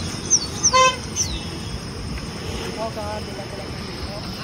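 A steady low rush from the swollen, flooding river under a high, even insect drone. In the first second and a half come a few quick whistled chirps falling in pitch and one short, horn-like toot.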